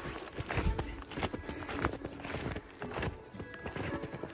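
Footsteps tramping through fresh snow at a steady walking pace, a step about every 0.6 seconds, under background music.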